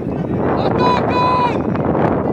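Wind buffeting the microphone steadily on an open football pitch, with two short whistle blasts about a second in, the second one longer.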